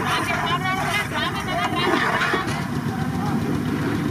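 Prawns frying in a large pan of oil over a wood fire, a steady noise throughout, with people talking over it in the first couple of seconds.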